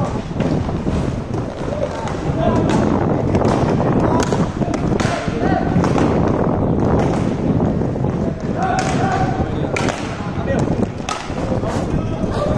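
Inline roller hockey play on a plastic-tile court: frequent sharp clacks of sticks and puck and a steady rolling rumble of skate wheels, with players calling out now and then.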